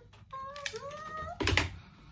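A person humming a soft, wavering tune, then a brief clatter about one and a half seconds in.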